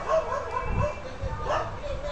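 A dog barking over and over, about one bark every three-quarters of a second.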